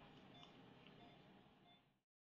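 Near silence: faint room noise with a few soft, short electronic beeps, fading out near the end.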